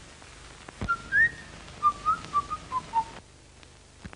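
A short whistled tune: one note sliding upward, then a quick run of short notes stepping down in pitch. It comes just after a dull thump about a second in.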